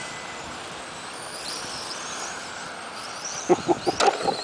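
Radio-controlled touring cars running on asphalt, their motors whining high and rising and falling in pitch as the cars speed up and slow down, over a steady hiss.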